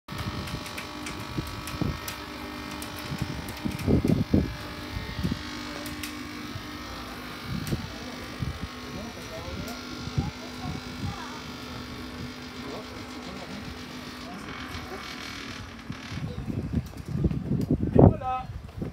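Electric cotton candy machine's spinning head running with a steady motor hum as candy floss is spun; the hum drops away a couple of seconds before the end.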